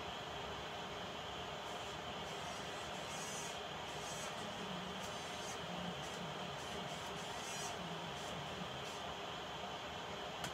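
Steady background hiss, with only faint, indistinct low murmurs and small sounds in it.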